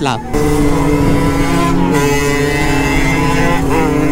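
Small 50cc dirt-bike engine running steadily at high revs under throttle while riding, with a brief dip in the note about halfway through.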